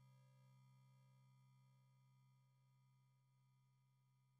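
Near silence: the faint tail of a held synthesizer tone, a low steady note with a few higher ones above it, slowly fading out.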